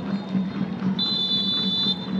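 Referee's whistle blown for the end of the first half: the tail of a short blast at the very start, then one long, steady, high-pitched blast from about a second in.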